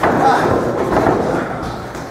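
A thud on the wrestling ring's canvas right at the start, followed by footfalls on the mat and low voices.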